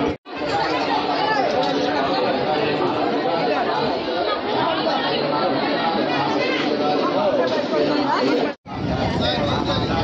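Crowd chatter: many people talking over one another, with no single voice standing out. It cuts out abruptly twice, just after the start and about eight and a half seconds in.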